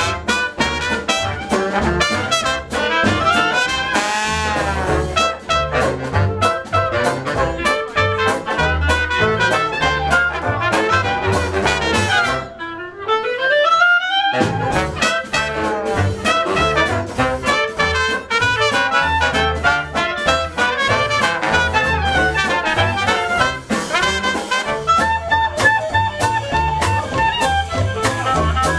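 Traditional New Orleans-style Dixieland jazz band playing live, with trumpet, trombone, clarinet and saxophone weaving together over banjo, double bass and drums. About halfway through, the band stops for a short break in which a single instrument plays a rising run, and then the full ensemble comes back in.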